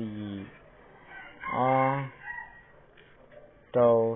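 A man's voice says a few sparse words, with a drawn-out animal call, likely a bird, in the background around the middle.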